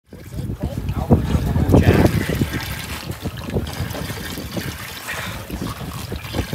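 Indistinct talk over wind and water sounds on an open fishing boat at sea, irregular and fairly loud.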